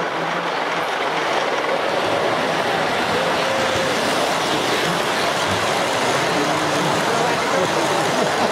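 O gauge model train, a streamlined steam locomotive and passenger cars, rolling past on three-rail track with a steady rumble of wheels. Crowd chatter sits behind it.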